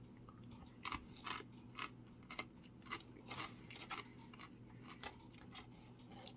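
A man chewing a crunchy nacho chip: faint, irregular crunches, roughly two a second.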